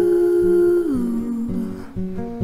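A woman singing a wordless held "ooh" that slides down in pitch about a second in, over a fingerpicked acoustic guitar with a capo.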